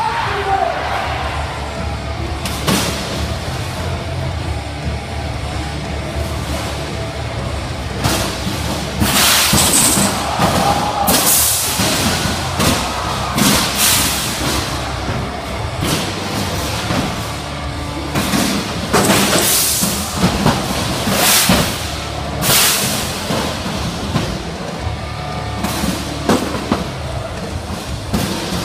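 Music over the arena PA, with repeated sharp bangs and crashes of combat robots hitting each other and the arena walls, most of them in the middle of the stretch.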